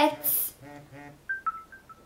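A brief two-part hum, then four quick electronic beeps alternating between a higher and a lower pitch.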